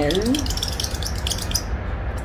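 The end of a spoken word, then a steady low hum under a crackly hiss of tiny clicks.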